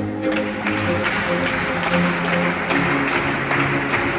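String quartet music with sustained low cello and viola notes, under a dense rushing noise with a sharp tick about three times a second.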